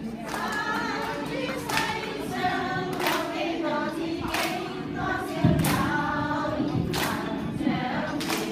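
A group of women singing together, with hand claps roughly every second. A louder thump comes a little past the middle.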